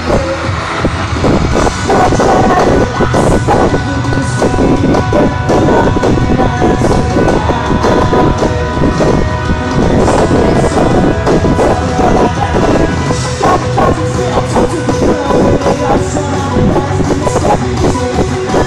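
Live rock band playing loudly through an arena PA, recorded from inside the crowd.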